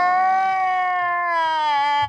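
A long, held pitched tone with strong overtones, sliding slowly down in pitch and stopping abruptly at the end.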